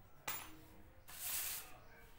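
A sharp click with a short ring about a quarter second in, then a half-second scrape as a sheet of paper is slid across a cement floor.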